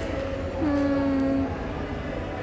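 A single steady, flat-pitched horn-like tone, a little under a second long, starting about halfway in over a constant low background hum.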